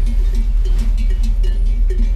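Bells on a flock of sheep and goats clanking irregularly as the animals crowd past. Under them is the low, steady rumble of a car engine heard from inside the cabin.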